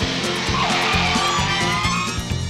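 Guitar-led music with a bass line and a steady beat, and a gliding melody line about half a second in.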